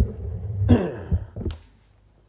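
Muffled rumble of a phone being handled as it moves over the rods, with a short falling sigh-like voice sound partway through and a single click about a second and a half in.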